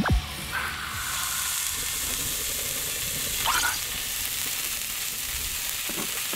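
Beef sizzling on a hot grill: a steady hiss that grows louder about a second in.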